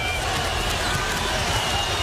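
Basketball being dribbled on a hardwood court under steady arena crowd noise.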